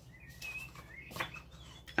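Faint high, wavering chirps over a low steady hum, with one short rustle of a paper index card being handled a little over a second in.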